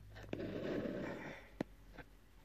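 A single soft rush like a person breathing out, swelling and fading over about a second, with a few small clicks from handling the coil of copper rings.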